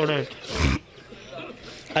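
A man's chanted recitation ends on a falling note, then a short, loud burst of breath hits the close microphone about half a second in, followed by a quieter pause.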